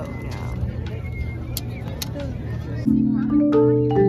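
Marching band front ensemble on marimbas and vibraphones starting to play ringing, held chords about three seconds in, after a low outdoor background.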